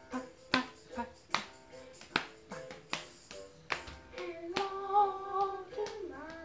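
A family singing a children's hello song at home: sharp strokes mark a steady beat, and a voice holds one sung note for about a second near the end.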